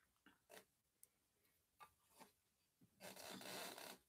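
Handling noise from the camera being adjusted by hand: a few short faint rubs and scrapes, then a louder rub lasting nearly a second near the end.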